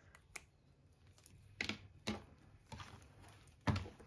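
A handful of light, separate clicks and knocks from a ring binder and stationery being handled and moved on a wooden table.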